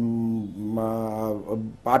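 A man's voice holding drawn-out vowels at a level pitch: one long held sound, a short dip about half a second in, then a second held tone that ends about a second and a half in.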